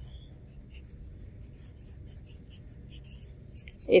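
A pen scratching on lined paper, drawing short arrows: a run of faint, brief strokes.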